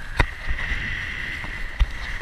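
Kiteboard riding over choppy water, with wind rumbling on an action camera's microphone and a steady high whistle throughout. Two sharp knocks, one just after the start and one near the end, as the board slaps the chop.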